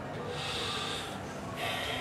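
A Quran reciter drawing breath close to a handheld microphone in a pause between recited verses: two hissing intakes, the second near the end, filling his lungs before the next long phrase.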